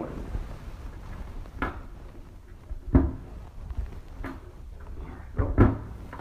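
An eight-bay desktop NAS enclosure being turned around by hand on a tabletop: a low rumble as it shifts, with scattered handling knocks, the loudest about three seconds in and a close pair near the end.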